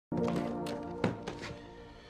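A held musical chord that fades away, over a few knocks and clicks from a trunk's lid and latch being handled. The loudest is a thunk about a second in.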